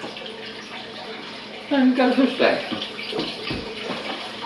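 Water running steadily, with a voice breaking in briefly around the middle.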